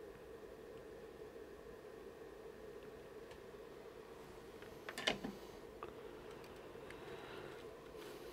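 Quiet workbench room tone with a faint steady hum, broken about five seconds in by a brief cluster of small clicks as the circuit board and its wires are handled, with a few fainter ticks around it.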